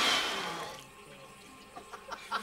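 A sudden loud splash in toilet-bowl water, dying away over about a second.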